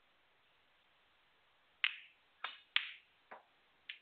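Snooker balls clicking: five sharp, separate clicks starting about halfway through, each with a short ringing tail.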